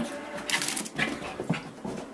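Small dog making short vocal sounds while playing with a sock, in about four brief bursts.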